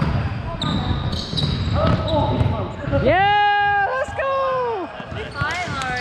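A volleyball knocking on a hardwood gym floor and off players' hands, with players' voices, in a large echoing sports hall. About three seconds in, a loud drawn-out shout lasts nearly a second.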